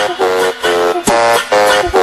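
Dance music from a Pará tecnomelody/brega DJ set: short, repeated stabs of a bright, guitar-like chord over a kick drum, with no voice.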